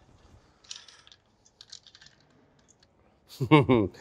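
Food being sprinkled over mini toasts on a tray: a faint soft rustle, then a few scattered light ticks. A short burst of voice comes near the end.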